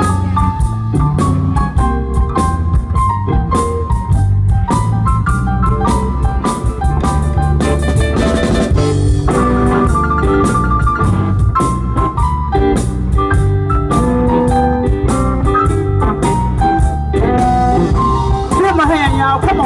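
Live blues band playing an instrumental passage: drum kit, bass and electric guitars, with an electric organ-sounding keyboard playing held notes and lead lines over them.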